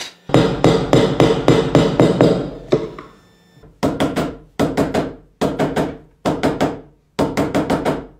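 Hammer striking a steel chisel held upright in a wooden block, chopping out a mortise. A fast run of blows lasts about two and a half seconds, then after a short pause the blows come in quick groups of two to four, less than a second apart.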